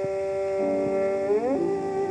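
Violin with piano accompaniment on a 1909 acoustic recording, through steady surface hiss. The violin holds one long note, then slides up to a higher note about one and a half seconds in, while quiet piano chords enter beneath it.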